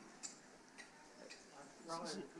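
Faint footsteps, hard shoe heels clicking on the floor about twice a second in a quiet hall, with a voice starting just before the end.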